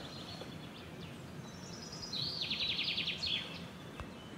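A songbird sings a short, rapid trill of high notes about two seconds in, lasting a little over a second, over a steady background hiss.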